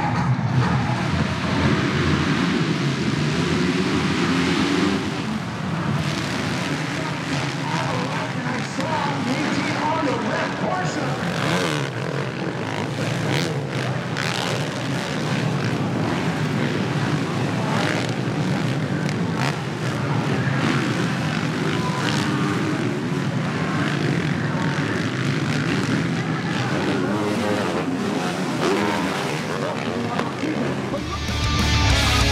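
A full gate of 450-class motocross bikes, many engines together, revved at the starting gate and then racing off as a pack. The combined engine noise is loudest for the first five seconds and then drops a little as the field spreads around the track.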